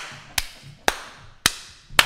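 One person clapping hands in a steady rhythm, about two claps a second, each sharp clap followed by a short room echo.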